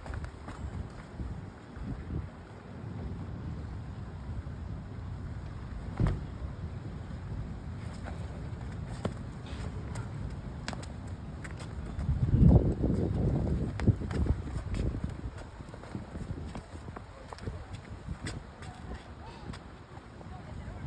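Wind rumbling on the microphone outdoors, swelling into a stronger gust about twelve seconds in, with a few scattered sharp taps.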